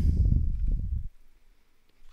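A low, muffled rumble lasting about a second, with no speech in it.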